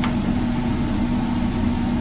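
Steady low hum with a constant droning tone and no change in level, the background noise of the room or recording system; a single faint tick right at the start.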